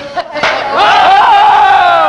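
Men's voices yelling one long, drawn-out shout of excitement that starts about half a second in.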